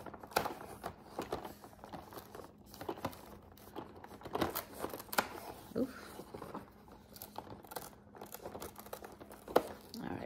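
Cardboard and paper crinkling and tearing in scattered rustles as a cardboard chocolate advent calendar door is opened and the chocolate taken out, with a sharp click shortly before the end.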